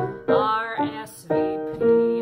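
A woman singing a show tune with vibrato to grand piano accompaniment. Piano chords are struck twice in the second half.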